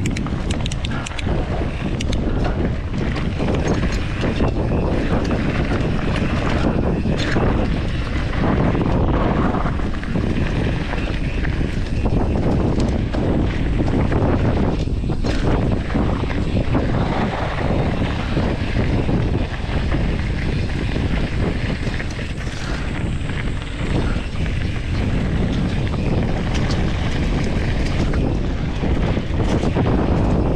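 Wind buffeting a GoPro's microphone as a Norco Sight mountain bike rolls fast downhill on a dry dirt trail, with steady tyre rumble and frequent short rattles and knocks as the bike goes over bumps.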